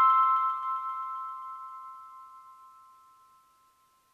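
The last chime-like note of background music ringing out and fading away to silence about two and a half seconds in.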